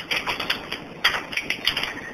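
A run of irregular soft clicks over a rustling hiss.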